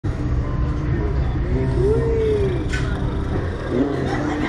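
A steady low rumble, with a short hummed 'mm' from one of the riders that rises and falls in pitch about two seconds in.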